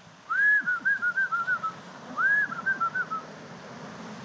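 A person whistling to call horses: two short warbling phrases, each a rising note followed by quick little notes that step downward.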